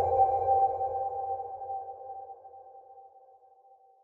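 Electronic chime of a logo sting ringing out and slowly fading away, dying out near the end, with a low drone beneath it fading out sooner.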